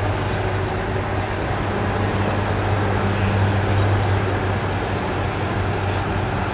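A steady low engine-like hum with a loud, even rushing noise over it.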